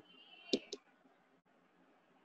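Two short, sharp clicks about a fifth of a second apart, over faint background noise.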